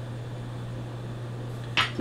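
Steady low hum of background room noise, with a brief hiss near the end.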